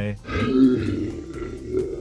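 A man's long, drawn-out, rough-voiced shout, starting about a quarter second in: the stretched-out middle word ("high") of a spoken sign-off catchphrase.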